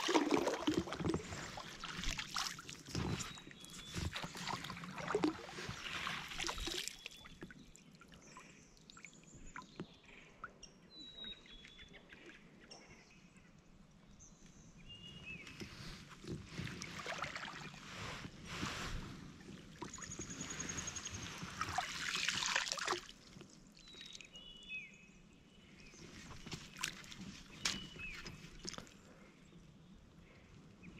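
A landing net being pushed and dragged through lily pads and weeds beside a kayak: water sloshing and splashing in two stretches, one in the first several seconds and one about two-thirds of the way in, quieter in between.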